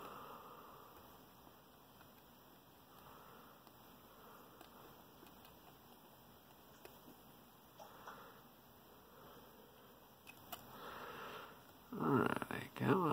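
Near silence, with a few faint ticks from a lock pick working the pins of an ASSA Ruko 2 lock.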